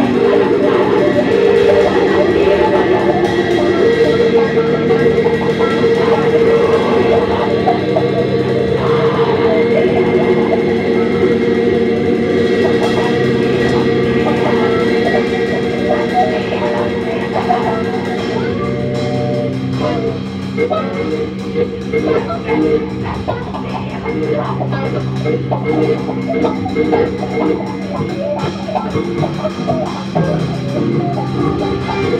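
Live band playing instrumental music, with guitar to the fore over sustained notes and a steady bass tone. It thins out to sparser, choppier playing in the second half.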